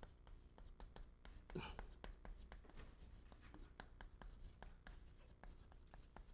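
Chalk tapping and scratching on a chalkboard as Chinese characters are written stroke by stroke: faint, quick, irregular clicks throughout. A short, faint vocal murmur comes about a second and a half in.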